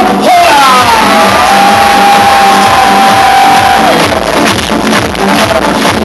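Beatboxing: a steady beat, with a falling vocal glide near the start and then one long held note lasting about two seconds.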